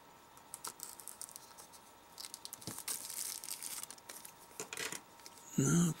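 Clear plastic shrink-wrap on a plastic toy can being slit with a small blade and torn away, crinkling and rustling with light clicks, loudest about halfway through.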